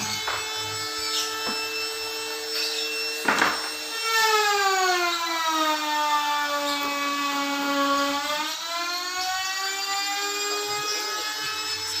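A motor whining; about a third of the way in it grows louder and its pitch sinks slowly for several seconds, then rises back. A single sharp knock comes just before it grows louder.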